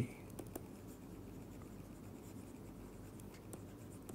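Faint scratching and light ticks of a pen stylus writing on a tablet.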